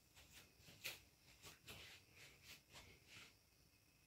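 Near silence: quiet room tone with a few faint, scattered clicks and rustles.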